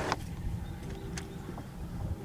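Boat motor running steadily at low speed: a low rumble with a faint hum that comes and goes, and a couple of light clicks.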